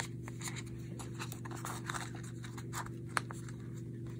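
Soft rustling and light clicks of paper and needles being handled as two needles are pushed through punched holes in a paper book's spine, with one sharper click about three seconds in. A steady low hum runs underneath.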